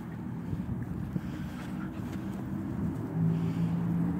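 Low engine rumble from a motor, with a steady hum that comes in louder about three seconds in, and wind on the microphone.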